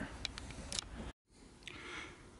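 Handling noise from the camera being moved and set down: a few light clicks and knocks in the first second. A moment of dead silence follows just after a second in, then faint background hiss with one more small click.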